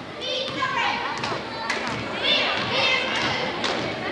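Basketball game in a gym: high-pitched shouting from girls on the court and in the crowd, with several sharp thumps like the ball bouncing on the floor.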